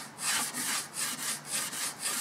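Model railway track being scrubbed back and forth by hand, about two to three rubbing strokes a second. The strokes clean the still-wet rust-coloured weathering paint off the tops of the rails so that it is left only on their sides.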